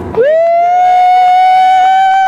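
A person's loud, high 'woooo' whoop of cheering: a single note that starts a moment in and is held steady.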